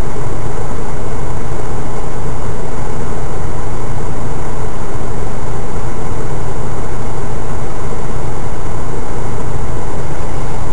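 A 4x4's engine and drivetrain running steadily at low speed, heard from inside the cab, with tyre and rough-track noise. It is loud throughout, with no single knock or bang.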